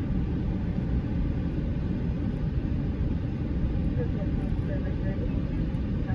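Steady low rumble of a vehicle moving slowly along a dirt road, heard from inside the cab, with faint voices in the background.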